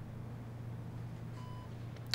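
Quiet room tone with a low steady hum, and one short, soft electronic beep about one and a half seconds in.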